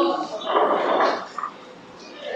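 A big bite taken from a piece of crisp paratha, then chewing: a short noisy burst about half a second in, then quieter.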